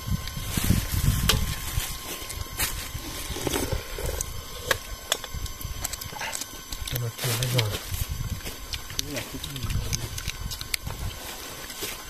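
Metal spoons clinking and scraping against metal pots and plates as several people eat, with low murmured voices now and then.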